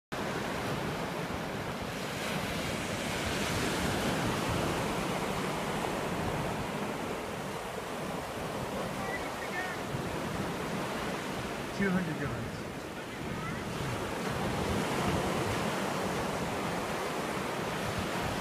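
Ocean surf washing up a shallow sandy beach: a steady wash of small breaking waves, swelling a little as waves run in.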